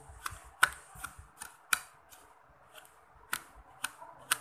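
Homemade toothpaste-and-salt 'kinetic sand' being crumbled by hand in a plastic bowl, giving a string of sharp, irregular crunches. The salt crystals make it 'super duper crunchy'.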